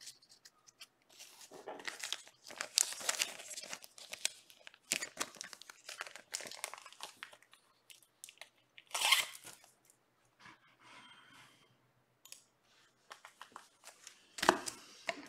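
Crinkly wrapper of a trading card pack being torn open and handled, in irregular crackling bursts, with one louder crinkle about nine seconds in.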